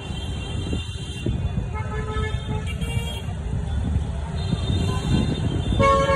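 Vehicle horns honking in several long steady blasts, with a louder one starting near the end, over a continuous low rumble of traffic or engine noise.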